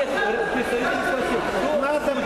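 A crowd of spectators talking and calling out at once, a steady hubbub of many overlapping voices.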